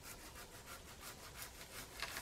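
Hand pruning saw cutting into a branch held overhead, in quick, even back-and-forth strokes, about seven a second.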